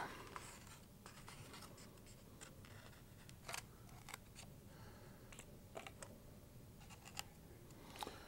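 Near silence with a few faint scratches and clicks from an X-Acto hobby knife slitting the tape on a foam model airplane's fuselage, and from the foam airframe being handled.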